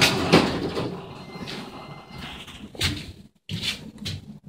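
Hydraulic elevator doors sliding open, the rolling noise fading away over the first second or so, followed by a few short knocks.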